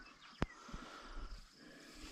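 Faint handling noise with one sharp click about half a second in.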